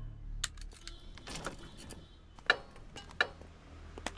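Faint scattered metallic clicks and jingles of keys being handled at a Hero Honda Splendor motorcycle's ignition; the sharpest click comes about two and a half seconds in.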